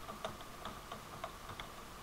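Computer keyboard typing: a run of light, faint key clicks, about five a second.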